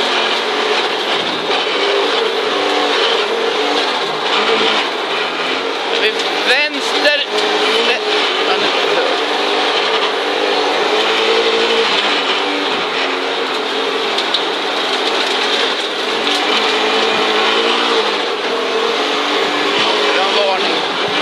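In-cabin sound of a 1983 Audi Quattro Group B rally car's turbocharged five-cylinder engine at racing speed on a snowy stage. The engine note climbs and drops with throttle and gear changes, with a quick swoop in pitch about six to seven seconds in, over a constant wash of tyre and road noise.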